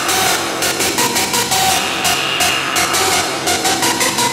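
Early-1990s hardcore techno (gabber) track playing in a continuous DJ mix: fast, regular percussion hits and a short repeated synth riff, with little deep bass in this stretch.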